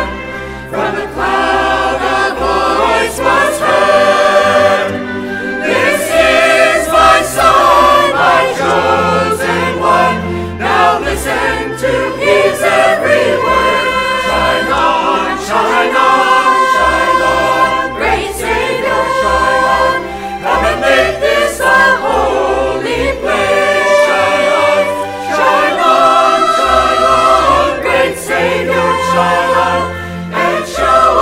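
A mixed church choir of men and women singing, with sustained low instrumental notes underneath.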